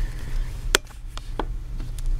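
A few short, sharp taps on a sheet of paper lying on a desk, the loudest a little under a second in, over a steady low hum.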